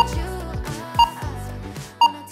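Workout interval timer counting down the last seconds of an exercise round with short high beeps, one a second, three in all, over background pop music.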